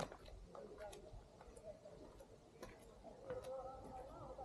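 Faint, irregular footsteps tapping on a stone-paved path, with a faint voice in the last second.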